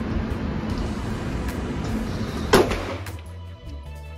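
One sharp handgun shot about two and a half seconds in, over a steady background rush, followed by background music.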